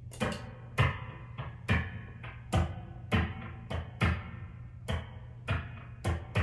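Electric guitar played through an amplifier: chords struck in a slow, uneven rhythm, each with a low thump and a ringing decay, over a steady amplifier hum.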